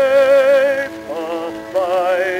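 Baritone voice singing a hymn with wide vibrato and orchestral accompaniment, from a 1910s acoustical 78 rpm recording: one long held note, then new notes a little after the middle and near the end.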